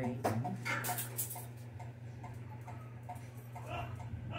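Perfume atomizer spritzing onto a cardboard box, short hissing sprays in the first second and a half.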